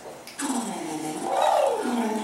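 A long, drawn-out wordless vocal sound from a stage performer, starting about half a second in, its pitch dipping, then climbing high and sliding back down.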